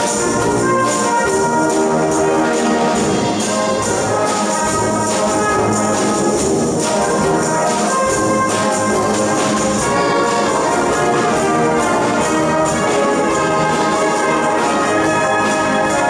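A brass band playing a jazzy arrangement, many brass parts sounding together over a steady beat.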